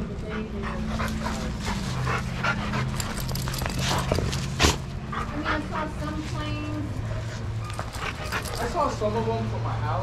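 Dogs play-wrestling at close range, with a dense run of scuffs and clicks through the first half and one sharp click, the loudest sound, about halfway through. Short pitched calls follow near the end.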